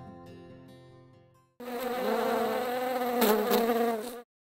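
Last guitar notes die away, then about one and a half seconds in a loud bee buzz starts suddenly, wavering slightly in pitch.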